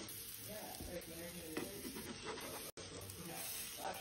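Banana-and-egg pancake batter sizzling faintly on a hot griddle, with a spatula scraping under the pancakes. The sound cuts out for an instant about two-thirds of the way through.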